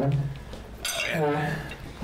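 A metal fork and other cutlery clinking against plates during a meal at a table. A short vocal sound comes about a second in.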